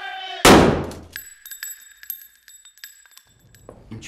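A single loud rifle shot, fired into the air about half a second in. It is followed for about two seconds by a high steady ringing, with a scatter of small clinks and ticks.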